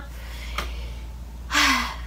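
A woman's short, sharp breath, a gasp, about one and a half seconds in, after a faint click. A low steady hum runs underneath.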